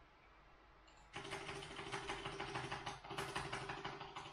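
Printer running a job: a steady motor hum with rapid ticking that starts about a second in, breaks off briefly about three seconds in, and then runs on.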